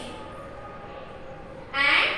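A woman's voice pausing for about a second and a half, leaving only faint room tone with a faint steady hum, then resuming speaking near the end.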